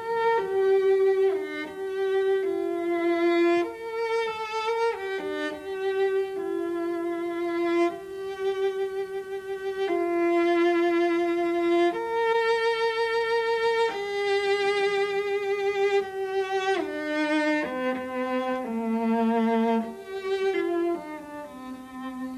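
Solo cello bowed in a slow melody, one note at a time. Many notes are held for a second or two with vibrato.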